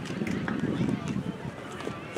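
Indistinct chatter of several voices, none of it clear enough to make out words, with a few faint ticks.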